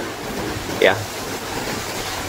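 A man says "yeah" once, about a second in, over a steady rushing background of sea surf and wind.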